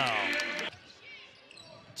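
A sports commentator's drawn-out call falls in pitch and trails off in the first third, leaving faint arena background, with a sharp click at the very end.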